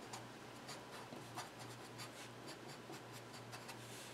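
Felt-tip Sharpie marker writing on paper: a string of faint, short strokes as words are written out.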